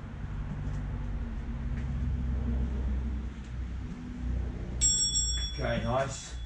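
A phone interval timer's high bell-like chime sounds for about a second near the end, signalling the end of a 30-second work interval. Under it runs a low, steady engine-like rumble.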